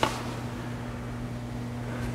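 Room tone: a steady low hum.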